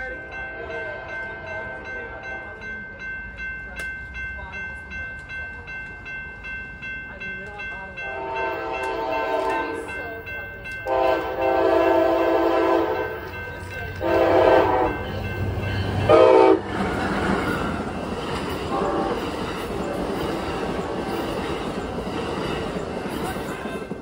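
A railroad crossing bell rings rapidly and steadily at a grade crossing. Then a passenger train's horn sounds a series of chord blasts as the train approaches: the longest runs about two and a half seconds, followed by shorter ones. In the last few seconds the Amtrak Pacific Surfliner train rushes past at high speed.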